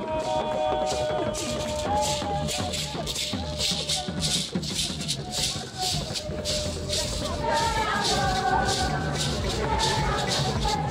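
Crowd singing in procession over a steady shaker beat, with a second group of voices joining in near the end.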